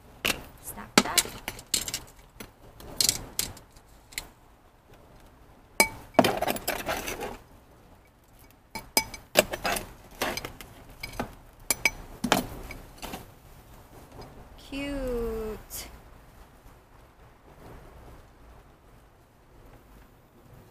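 A small hand scoop digging potting soil out of a metal bucket and tipping it into a ceramic pot: a run of scrapes and clinks against the bucket and pot, with stretches of soil pouring, busiest in the first dozen seconds and quieter near the end.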